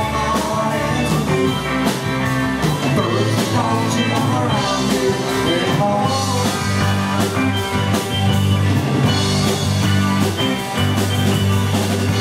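Live rock band playing: electric guitars, bass guitar and drum kit together, with a steady beat and a sustained bass line.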